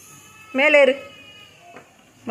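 A small child's short vocal call, rising then falling in pitch, about half a second in, in a small room.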